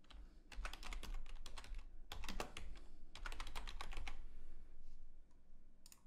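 Typing on a computer keyboard: quick keystrokes in three short bursts, then a single click near the end.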